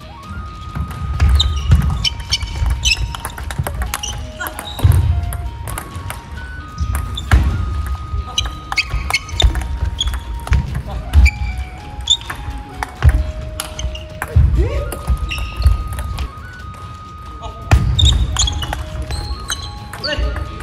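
Table tennis rallies: the celluloid ball clicks sharply and repeatedly off the rackets and the table, with shoes squeaking on the hall floor, under a simple background melody of held synth notes.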